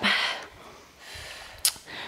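A woman's breath pushed out hard while exercising, followed by faint breathing and a single short click about a second and a half in.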